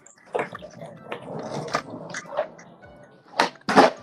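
Skateboard on concrete: wheels rolling with several board clacks, then two loud sharp cracks near the end, the board popping and landing a flip trick.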